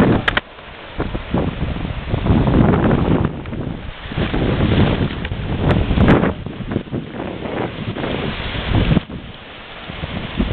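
Surf washing and foaming over shoreline rocks, with gusting wind buffeting the microphone. A couple of sharp clicks near the start and about six seconds in.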